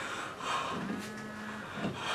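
A man weeping, letting out a low, drawn-out moan between his cries, with a softer breathy sob just before it.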